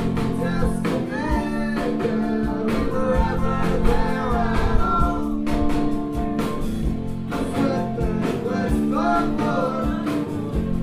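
Ska-punk band playing live, with singing over electric guitar and a steady drum beat.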